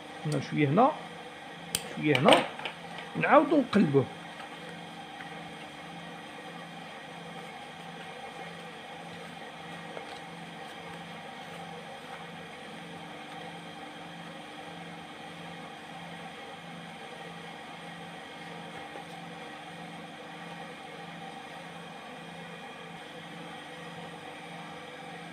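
A voice is heard briefly in the first four seconds, then a steady low mechanical hum with a slow, even pulse continues at a moderate level.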